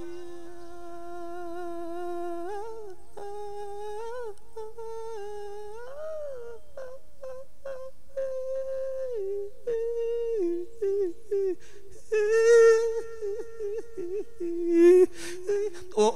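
A monk's amplified voice drawing out long wordless sung notes, held steady and then sliding and ornamenting between pitches in the melodic manner of an Isan sung sermon (thet lae).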